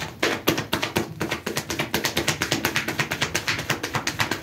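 A rapid, steady run of light taps or clicks, about seven a second.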